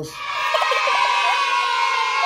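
A group of children cheering and shouting together, many young voices held in one long shout.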